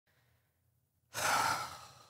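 A man's long sigh: a loud exhale of breath that starts suddenly about a second in and trails off.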